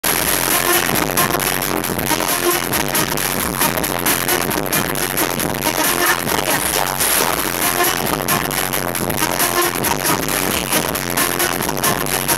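Live electronic dance music played loud through a stage PA, with a DJ's backing track and live horns (trumpet, saxophone, trombone) and violin, recorded from the crowd.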